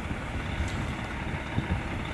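Steady low rumble of outdoor background noise with wind on the microphone, and a couple of faint brief knocks.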